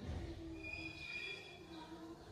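A near-quiet pause in the recitation: faint room tone with faint, thin high-pitched tones starting about half a second in and lasting about a second.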